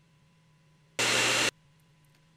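A half-second burst of loud static-like white noise about a second in, switching on and off sharply out of near silence: an edited-in noise effect.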